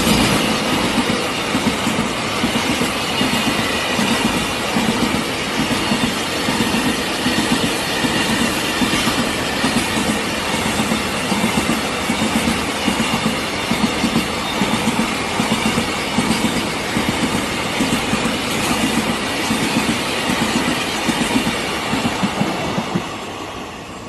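Double-stack container freight train passing at close range: a steady rumble of wagons and wheels on the rails, with many short clattering peaks. The sound fades near the end as the last wagon goes by.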